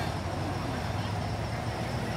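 Steady background noise, an even hiss over a faint low hum, with no distinct event.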